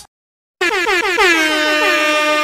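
About half a second of dead silence, then a loud air-horn sound effect blares in, its pitch sliding down and settling into a steady, rapidly pulsing blast.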